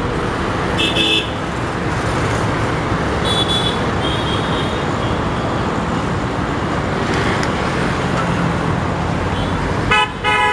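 Steady traffic noise with short vehicle-horn toots, one about a second in and two more around three and a half to five seconds in.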